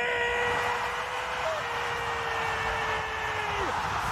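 A football commentator's drawn-out shout, held on one long steady note and dropping away near the end, over the steady roar of a cheering stadium crowd after a goal.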